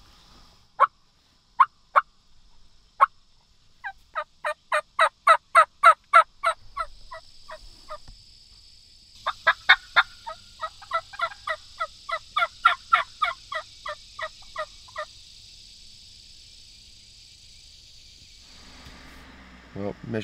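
Wild turkey hens yelping: a few single notes, then quick runs of about five evenly spaced yelps a second, with a steady high hiss underneath through the second half.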